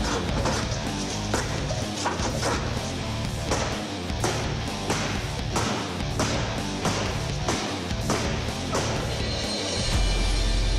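A forged fighting knife repeatedly stabbing and chopping into metal paint cans full of paint: a run of sharp metallic impacts, about two a second, over background music.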